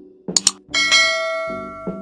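Sound effects for a subscribe animation: two quick mouse clicks, then a notification bell ding that rings and fades over about a second, over background music with a beat.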